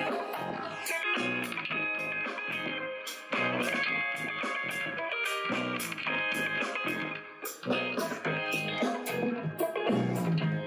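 Guitar music with a steady drum beat, played through the two bare speaker drivers of a Bose Wave Music System without its waveguide tubing.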